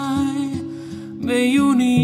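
A man singing in Hebrew to a picked acoustic guitar. His voice drops out briefly around the middle and comes back in for the second half while the guitar keeps a steady picked rhythm.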